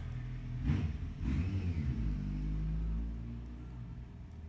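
A low engine rumble, like a motor vehicle going by, building up about a second in and fading away after about three seconds.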